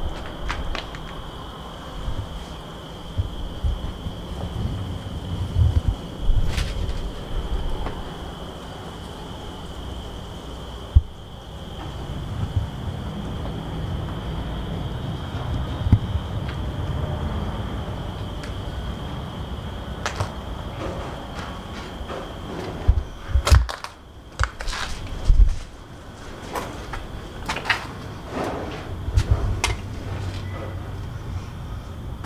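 Steady low rumble of distant interstate truck traffic under a steady high-pitched drone, with scattered footsteps and knocks on a debris-strewn floor and a cluster of louder knocks near the end.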